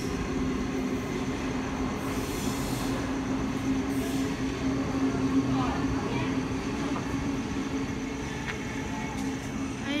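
Double-deck electric suburban train moving through the station: a steady hum over continuous wheel and track rumble, with a brief hiss a couple of seconds in.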